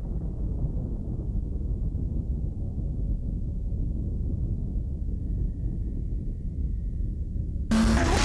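A steady low rumble, with a sudden loud burst of noise near the end.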